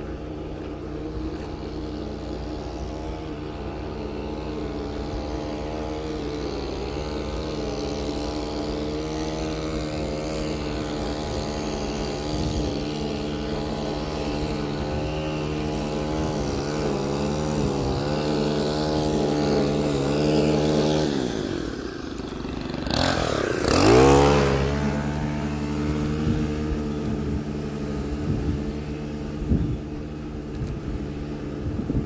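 A small motor on the bicycle running at a steady speed. A little over 20 seconds in its pitch sinks as the bike slows almost to a stop, then rises sharply as it speeds up again.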